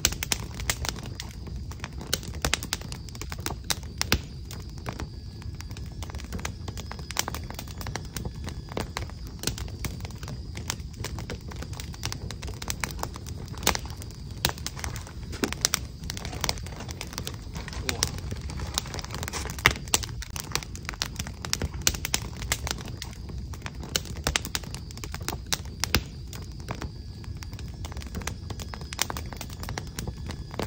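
Crackling wood fire: irregular snaps and pops of burning logs over a low, steady rumble of flames.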